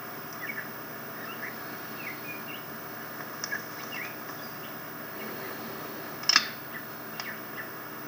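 Scattered short bird chirps over a steady hiss, from a film's forest scene heard through a television's speaker. A sharp click comes about six seconds in, and a fainter one about a second later.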